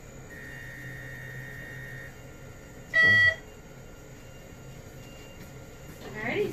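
Portable x-ray machine making an exposure: a faint steady high tone for about two seconds, then a short, loud electronic beep about three seconds in.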